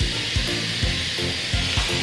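Steady hiss of hydrogen gas flowing into a radiosonde weather balloon as it is filled, over background music with a steady beat of about four a second.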